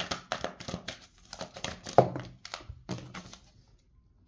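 Tarot cards being handled and drawn from the deck: a run of quick card clicks and flicks, with one louder knock about two seconds in, dying away shortly before the end.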